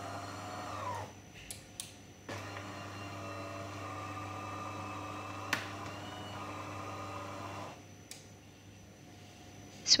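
The internal motor of a De'Longhi ECAM22.110 Magnifica S bean-to-cup coffee machine running as the infuser (brewing unit) drives itself back into its correct position after switch-on. A steady hum runs for about a second, stops briefly with a couple of clicks, then runs again for about five seconds with a single click partway through before stopping.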